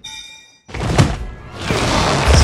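Film sound design: a high ringing tone of several pitches cuts off sharply after about half a second. After a moment's silence comes a single heavy thunk about a second in, then a rising rush of noise with film score near the end.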